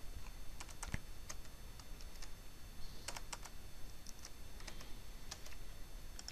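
Faint, irregular clicks of a computer keyboard being typed on, scattered keystrokes about two a second.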